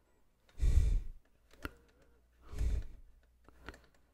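A person breathing out twice into a close microphone, about half a second in and again near three seconds, with a couple of faint clicks in between.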